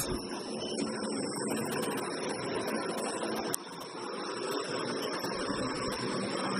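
Hornby OO gauge 06 diesel shunter model locomotive running steadily along the track pulling a short train of wagons: the small electric motor and gears running with its wheels rolling on the rails, a very smooth runner. A sharp click about halfway through, after which the sound is briefly quieter.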